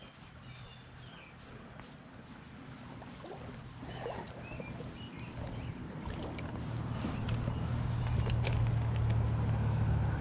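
A motor vehicle's engine hum, low and steady, growing gradually louder through the second half as the vehicle approaches.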